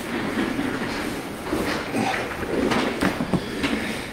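Several chairs scraping and shifting as a group of people sit back down at a table, with a few light knocks among the shuffling.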